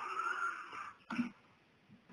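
A person's wordless vocal sound, breathy with a steady pitch, lasting about a second, then a short low vocal sound a little later.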